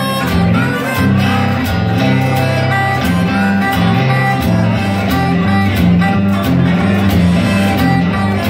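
Acoustic guitar playing a steady, repeating blues rhythm on the low strings, with a harmonica lead bending its notes over it.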